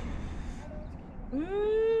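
Steady outdoor rumble and hiss, then about a second and a half in a high, drawn-out voice that rises in pitch and holds, like an excited exclamation.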